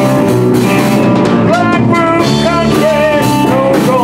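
Live rock band playing loudly: electric guitars with bent, wavering notes over a Tama drum kit.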